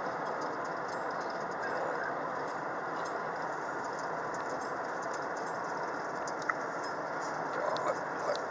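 Steady road and engine noise heard inside a moving car, with faint small rattles and a single sharp click about six and a half seconds in.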